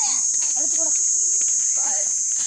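A steady, high-pitched chorus of insects that keeps on without a break, with snatches of children's voices beneath it.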